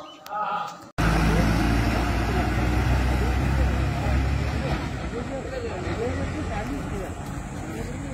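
A voice speaks briefly, then about a second in a sudden cut brings in the loud, steady low rumble of a bus engine running close by, with faint voices underneath.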